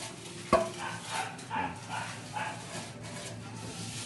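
A single sharp knock about half a second in, then short, faint calls in the background.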